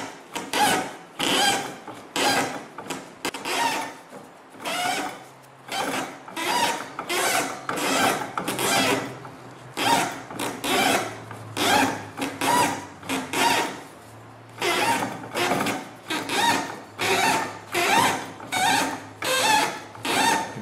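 Rasping and rubbing of jute string and hands on the paper casing of a cylinder firework shell break, as the shell is turned by hand on rollers and four strings are wound on under tension. The rasps come in a steady run of short strokes about two a second, with a brief pause about two-thirds of the way in, over a faint low hum.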